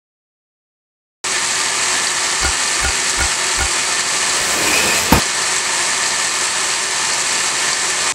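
Loud steady rushing noise that starts abruptly a little over a second in and cuts off right at the end, with four soft low thumps a second or two after it starts and a sharp click about five seconds in.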